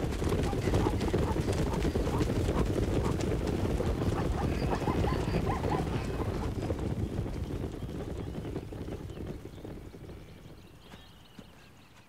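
Hooves of a wildebeest and zebra herd stampeding at a gallop, a dense drumming rumble that fades away over the last few seconds.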